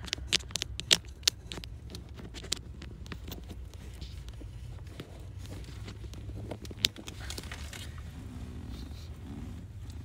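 Scattered sharp clicks and light scraping from plastic parts and wiring being handled behind the dashboard, most of them in the first second and a half and one more near the end, over a steady low rumble.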